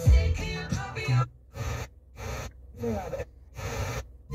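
Car radio playing FM music through the truck's speakers, then cutting out into several short silent gaps with brief snatches of sound between them as the station is tuned from 93.1 to 94.1.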